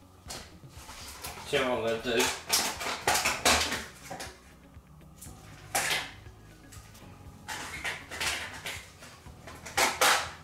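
Feeding tongs clicking and knocking in a glass terrarium while picking up a dropped beetle grub: a run of sharp clicks between about two and four seconds in, single clicks near six seconds and at the very end, and a short voice sound about a second and a half in.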